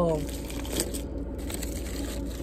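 Foil and paper sandwich wrapper crinkling faintly as it is handled and folded back, with a few brief crackles about a second in.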